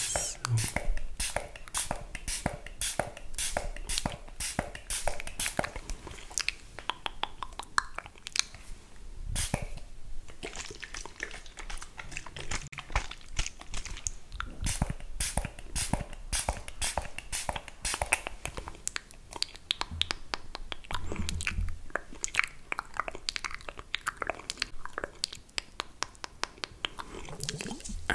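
Fine-mist spray bottle of micellar water pumped over and over close to the microphone: short spray hisses following each other about two to three times a second.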